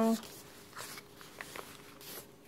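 Faint rustling and a few light ticks of paper as a journal page is handled and turned by hand.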